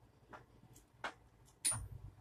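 Tennis ball being hit softly back and forth with rackets: three light knocks, about two-thirds of a second apart, the last and loudest one near the end with a dull thud.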